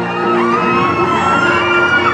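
Music playing with long held notes, over a crowd of young people shouting and whooping in celebration.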